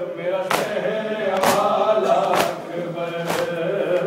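A group of men chanting a noha (Muharram lament) in unison, with a sharp, even beat of chest-beating (matam) about once a second, four strokes in this stretch.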